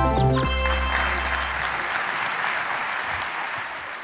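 An instrumental music cue ends in the first half second, its held bass dying away about two seconds in. Audience applause rises as the music stops and carries on, easing a little near the end.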